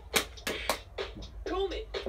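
Bop It Refresh handheld game playing its electronic drum beat, with sharp drum hits and a short voice command from the toy.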